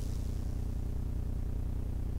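Steady low electrical hum from a public-address sound system, with faint room tone and no speech.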